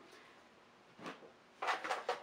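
Quiet room tone, then a faint knock about a second in and a short burst of handling noise near the end.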